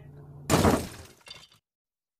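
A sudden crash like shattering glass, a sound effect, about half a second in, fading out within about half a second.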